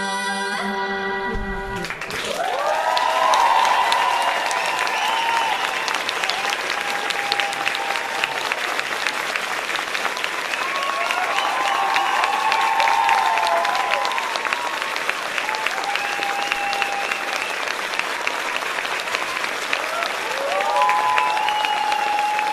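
Women's voices in close harmony hold the final chord of an a cappella folk song, which stops about two seconds in. An audience then applauds steadily, with cheering voices rising above the clapping now and then.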